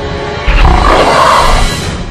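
A loud monster roar sound effect breaks in suddenly about half a second in, over a droning horror score, and fades away near the end.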